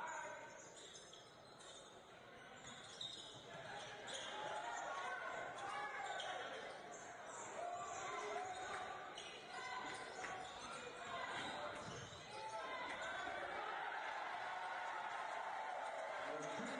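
Faint in-arena sound of a basketball game: a basketball bouncing on the hardwood court, with faint voices. It is almost silent for the first couple of seconds.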